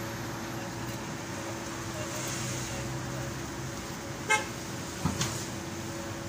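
Steady background of street traffic noise with a constant low hum running under it.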